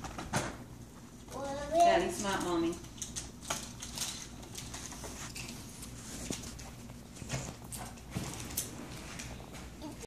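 A young child's brief high-pitched wordless vocalisation, about one second long, a little under two seconds in. Scattered light clicks and rustles of handling run before and after it.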